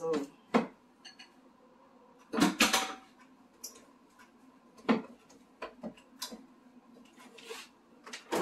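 Plastic blender jar and lid being handled, with a spatula knocking against the jar: a series of separate knocks and clatters, the loudest few close together about two and a half seconds in. The blender motor is not running.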